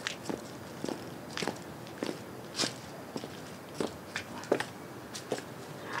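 Heel strikes of 6-inch Pleaser Captiva-609 platform high heels on concrete: sharp clicks at an even walking pace, a little under two steps a second.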